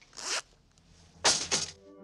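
A clothing zipper zipped twice: a short zip about a quarter second in, then a louder, quick double zip just past a second in.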